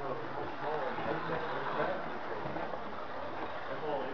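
Indistinct voices of several people talking in the background of a room, with no clear words, over a steady low background noise.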